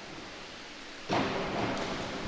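A springboard diver hitting the pool water. The splash starts suddenly about a second in, over a steady hiss from the pool hall, and fades off slowly. The diver enters still slightly piked rather than fully stretched.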